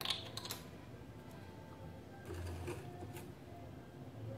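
Light clicks and taps of small plastic bottles being handled on a countertop. A little past two seconds in there is a short, louder noisy rustle as a large plastic disinfectant bottle is lifted and tipped to pour.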